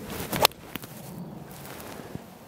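A TaylorMade P790 UDI 17-degree driving iron swung through and striking a teed golf ball: a short swish of the downswing, then one sharp crack at impact about half a second in.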